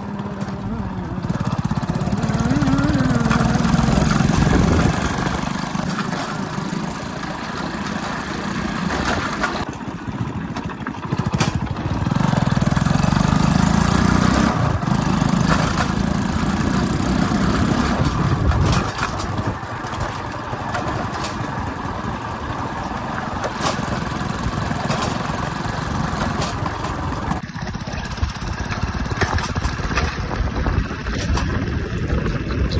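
Small motorcycle's engine running as the bike is ridden along a dirt road, its note rising and falling with the throttle. It swells louder twice, a few seconds in and again around the middle.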